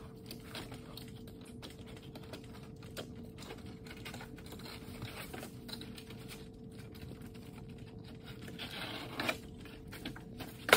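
Hands pressing and smoothing peel-and-stick ice and water shield membrane down onto OSB roof decking in a valley: faint scattered light taps and rubbing, with a slightly louder rustle about nine seconds in.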